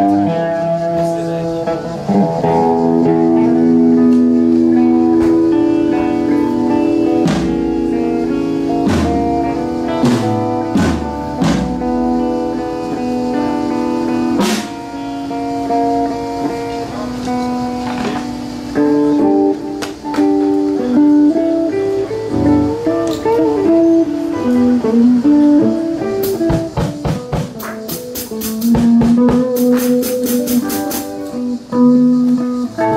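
Background music led by guitar, with sustained notes, scattered drum hits in the first half and bending melodic notes later on.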